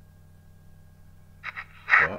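A pause in the talk with only a low steady hum, then a short vocal sound about a second and a half in and a voice starting to speak near the end.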